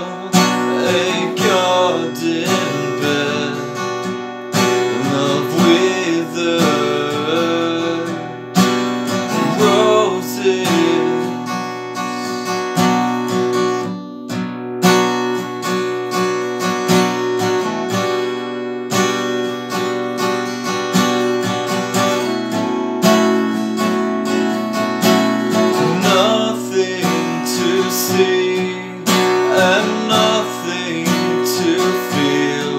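Solo acoustic guitar played in a mix of strummed chords and picked notes.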